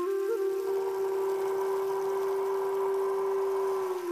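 Zen flute holding one long, breathy note, with a quick grace-note flick just after it starts.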